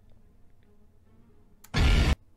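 A horror film's jump-scare sound sting: after a faint lull, a sudden loud hit, heavy in the bass, lands near the end and cuts off after under half a second.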